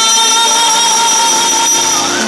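Male singer holding one long high note through a PA system, over a pop ballad backing track.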